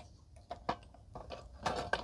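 A few faint clicks and light handling noise from the tripod stand of a Pyle PRJTP42 portable projector screen as its legs are folded up.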